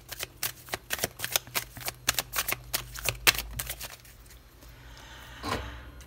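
An oracle card deck being shuffled by hand: a rapid run of card flicks and slaps for about three and a half seconds, then fading to quieter handling of the cards.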